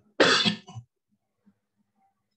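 A person coughing: one sharp cough with a shorter, weaker one right after it.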